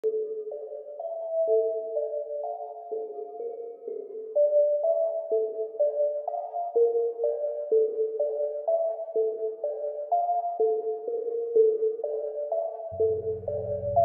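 Trap beat intro: a sparse, mid-pitched melody of clean single notes, about two a second, with no drums. About a second before the end a deep 808 bass comes in underneath.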